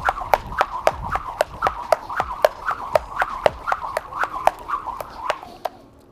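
A Rush Athletics speed rope swung fast in a steady rhythm of about four turns a second, each turn a swoosh through the air and a sharp whip as it strikes the mat under the jumper's feet. The rope stops just before the end.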